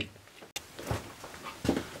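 A few brief, irregular soft knocks and rustles of someone moving about and handling equipment.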